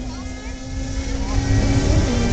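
Sport-bike engine heard from down the drag strip, holding a steady pitch over a low rumble that grows louder through the second half.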